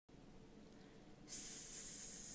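A person making a drawn-out hissing 'sss' sound, the sound of the letters 'es' in 'goes', starting just over a second in.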